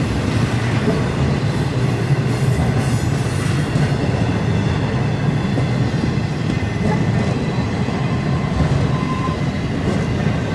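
Freight train's empty intermodal flatcars rolling past at trackside: a steady rumble of steel wheels on rail with the clatter of the cars.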